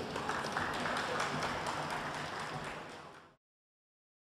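Audience applauding, fading down and cut off abruptly a little over three seconds in.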